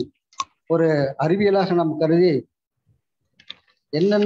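A man speaking for about two seconds over a video call. A sharp click comes just before he starts, and a few faint clicks come about three and a half seconds in.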